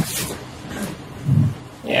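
Close breath noise on a handheld microphone: a sharp puff of breath at the start, then a low breathy sound from the throat about a second and a half in.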